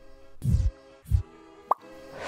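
Sound effects of an animated logo sting: two short, deep thuds about two-thirds of a second apart, then a quick rising blip, over a faint held tone.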